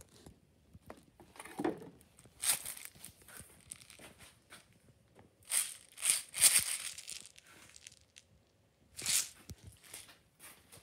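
Plastic detergent bottles being handled and pulled off a crowded shelf: a series of short scraping and rustling bursts, loudest just past the middle, with another near the end.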